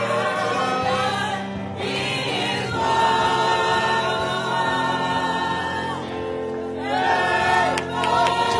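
Church choir singing a gospel song, holding long notes.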